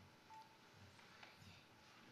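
Near silence: room tone with one faint short beep about a third of a second in.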